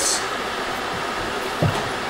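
Steady rushing background noise, with one short low sound about a second and a half in.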